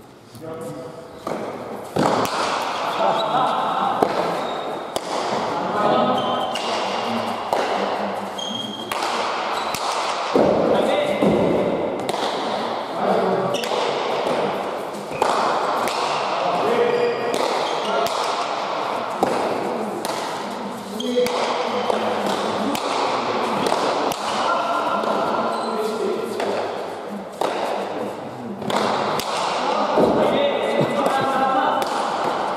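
Pelota ball being struck by hand and rebounding off the court walls and floor during a rally: repeated sharp, echoing smacks in a large hard-walled hall, mixed with voices from players and spectators. The quieter first second or so gives way to steady play.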